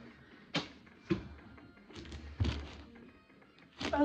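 Several short knocks and thuds of hands and a paperback book on a wooden countertop, a few irregular strikes about a second apart.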